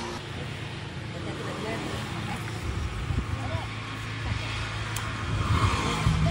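A motor vehicle's low engine hum from the roadside, swelling near the end, with faint voices in the background.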